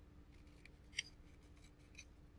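Scissors snipping paper in a few faint, short cuts, the clearest one about halfway through.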